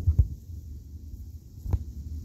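Low rumble of wind buffeting a phone's microphone, with a couple of dull thumps just after the start and another near the end.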